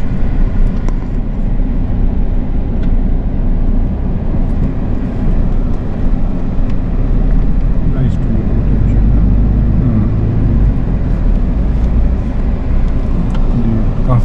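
Steady low engine and road rumble heard from inside a Toyota Hilux Revo's cabin while driving.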